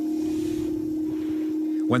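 A steady drone held on one low note in the soundtrack, with a faint hiss that swells and fades in the first second.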